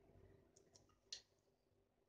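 A few faint, sharp clicks over near silence: two small ones about half a second in, then a single louder click a little after a second.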